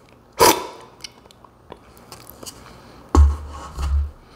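One quick, sharp slurp of brewed coffee from a spoon, sucked in hard to spray it across the palate as in cupping. Faint small clicks follow, and a low thump comes a little after three seconds in.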